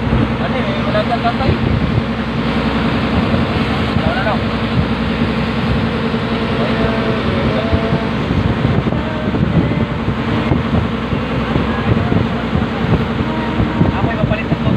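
Engine of a motorized outrigger boat (bangka) running steadily at cruising speed, with wind buffeting the microphone.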